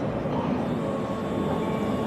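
Steady background noise with a faint thin hum, constant in level.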